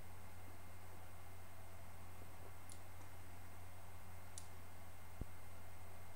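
Quiet sipping from a glass of beer over a steady low electrical hum, with two faint clicks in the middle and a soft low thump near the end as the glass is set down on a towel-covered table.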